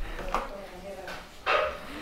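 Shih Tzu giving two short, quiet barks, the louder one about one and a half seconds in.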